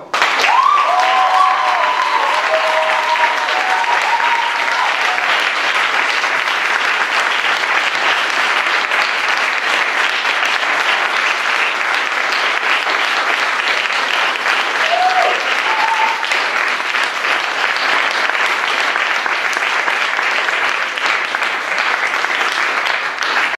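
An audience applauding steadily all through, with a few voices calling out in the first few seconds and once more about two-thirds of the way in.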